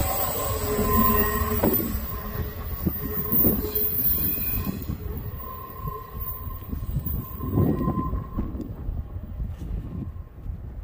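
Tail end of a freight train of trailer-carrying flatcars rolling past on steel rails: the wheels rumble on the track with thin, high squeals coming and going, and the sound fades as the last car moves away.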